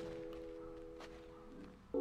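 Faint background music: a held chord of several steady notes that fades away over the pause, with one faint click about halfway through.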